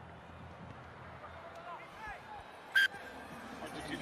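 Stadium crowd ambience: a low hubbub with faint distant shouts from the stands. One short, shrill high-pitched call cuts through near three seconds in and is the loudest sound.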